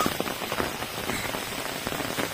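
Heavy rain falling on wet ground and puddles: a steady wash of noise dotted with many small drop ticks.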